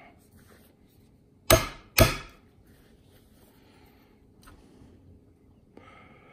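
Two sharp metal-on-metal taps about half a second apart: a punch driving the retaining pin of a new hook pinion gear through the sewing machine's hook drive shaft, so the pin will stick out on both sides.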